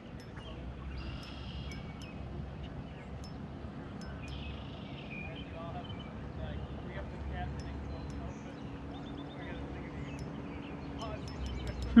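Quiet tackle-handling sounds, with faint clicks and rustles, as an ultralight spinning rod and reel are worked to play a hooked bass from a kayak, over a steady low rumble.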